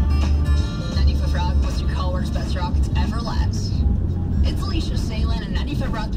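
Radio playing in a truck cab: music ends near the start and an announcer talks for the rest, over the steady low rumble of the engine and road noise.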